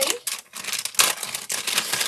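A packet of red craft clay rustling and crinkling as it is handled, with a sharp crackle about a second in.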